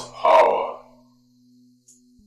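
A person's loud, wordless vocal cry in the first second, over a low, steady musical drone.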